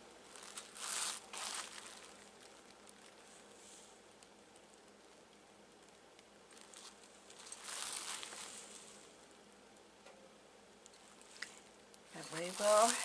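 Faint soft rustling and scraping from a paintbrush working acrylic paint on a glass bottle and the bottle being handled and turned on a cloth, with two louder soft swells, about a second in and again around eight seconds in, over low room hiss.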